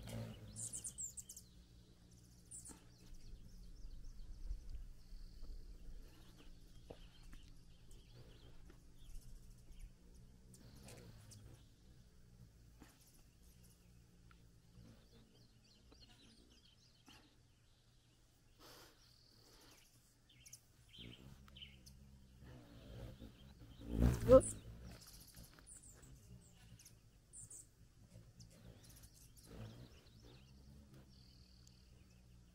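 Hummingbirds squabbling around a sugar-water feeder, giving short high-pitched squeaky chips now and then, mostly near the start and again late on. About 24 seconds in there is one loud, brief thump.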